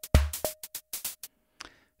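Modular synthesizer drum beat sequenced by a Pam's Pro Workout clock in Euclidean rhythms: kick thumps, short tight hi-hat ticks and a subtle ringing cowbell tone. The beat stops abruptly about a second and a half in.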